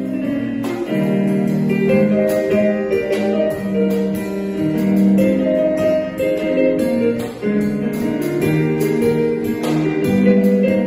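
Live piano-and-drums duo playing: a Casio digital piano carries a melody with chords while a small drum kit keeps a light accompaniment, with occasional cymbal and drum strokes.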